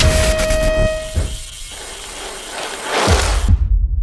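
Edited outro sound effects over a glitch transition: a steady pitched tone fades out about a second and a half in, then a rising rush of noise with deep booms near the end, its hiss cutting off suddenly.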